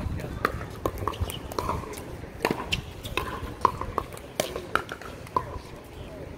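Pickleball paddles striking the hollow plastic ball: about a dozen sharp pops at irregular intervals, from play on this and neighbouring courts.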